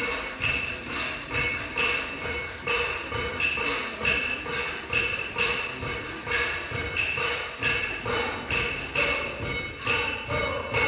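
Live big band music with a steady, evenly repeating beat of about two to three strokes a second.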